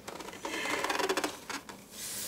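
Crackly rustling from a tray of cups and food being handled and set down on a bed, with a couple of light knocks near the end.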